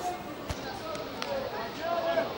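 Footballers shouting to each other during play, with a sharp thud of a football being kicked about a quarter of the way in and a lighter tap a little after halfway.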